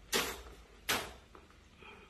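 A sliding window being pushed open: two short scraping swishes a little under a second apart.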